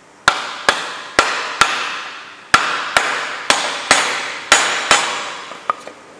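A mallet tapping a black end cap down onto the top of an extruded aluminium upright: four sharp strikes, a short pause, then six more, each ringing on briefly.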